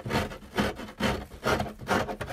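Rhythmic scraping or rasping, a little over two short strokes a second, at an even pace.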